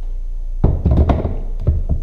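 An ARB jack's foot being set down and seated into an orange plastic jack base plate: a cluster of thunks and knocks starting about half a second in and lasting a little over a second.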